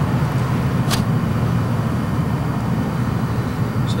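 Steady low background rumble, with a single short click about a second in.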